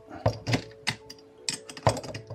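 Metal two-pin spanner clicking and clinking against the angle grinder's spindle nut and guard as it is picked up and fitted onto the nut, about five separate clicks with the sharpest near the end.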